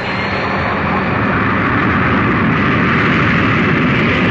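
Jet engines of a twin-engine airliner at takeoff power: a loud, steady rushing noise that builds over the first second and then holds, with a faint whine rising slightly at the start.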